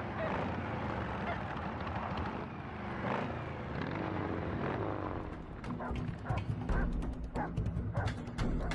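Motorcycle engine running under a film soundtrack; about six seconds in, percussive music with a low held note comes in.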